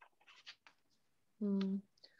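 A person's voice giving one short, steady-pitched syllable about a second and a half in, quieter than the surrounding speech. Before it come a few faint, brief scratchy rustles.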